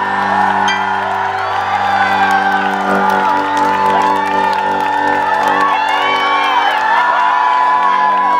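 A festival crowd cheering and whooping over a steady, held chord from the band's amplified instruments at the close of a rock set.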